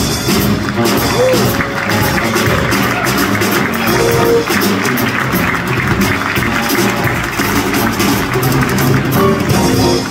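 Live band playing: electric bass guitar and a drum kit with cymbals keep a steady groove, with guitar over the top.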